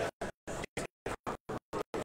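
Stuttering recording glitch: the audio keeps cutting out to dead silence, leaving short fragments of room sound about four times a second.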